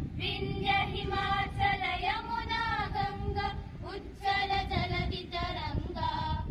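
A group of children and women singing a song together in unison, in long held notes, with a short pause for breath about four seconds in.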